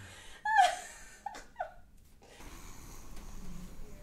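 Laughter tailing off into a few short breathy gasps, then quiet room tone.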